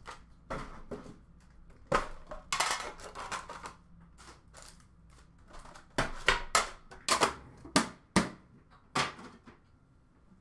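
A metal Upper Deck hockey card tin and its foil-wrapped packs being handled on a glass counter. A knock comes about two seconds in, then a short rustle, and a run of sharp clicks and taps in the second half as the tin is opened and the packs are taken out and stacked.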